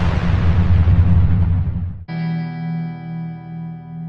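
Logo sting: a loud noisy swell over a low pulsing rumble cuts off abruptly about halfway through. A single held guitar chord with effects follows and rings on.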